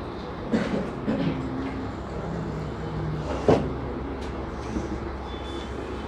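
Steady room hum with a marker writing on a whiteboard: a few short taps and scrapes, the sharpest about halfway through.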